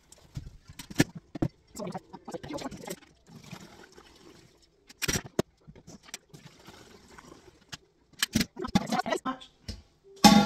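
Milk being poured from a stainless steel milk can into plastic calf-feeding bottles, with a series of sharp clinks and knocks from handling the metal can, funnel and bottles.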